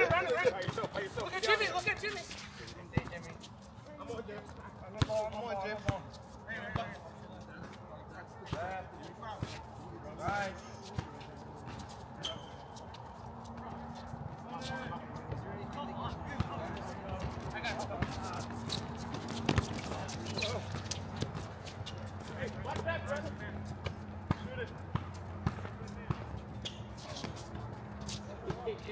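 Basketball being dribbled and bouncing on an outdoor hard court: scattered, irregular sharp thuds throughout, with players' voices and shouts.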